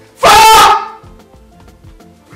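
A man's single loud, distorted wailing cry, about half a second long, over quiet background music.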